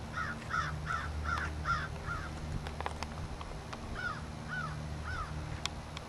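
A bird calling: a quick run of six arched calls, about two and a half a second, then three more after a pause of about two seconds.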